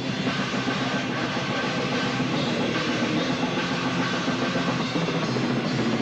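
Black/death metal band playing live, with the drum kit loud and close, cymbals and drums struck in a fast, dense run, and the band's guitars and bass underneath.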